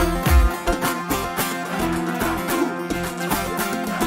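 Kurdish wedding dance music for govend, led by a plucked string instrument with no singing. The heavy bass beat drops out about half a second in and comes back at the very end.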